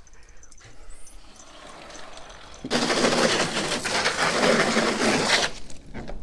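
Water rushing from a garden hose: a loud, even hiss that starts a little before halfway through, lasts about three seconds and stops sharply.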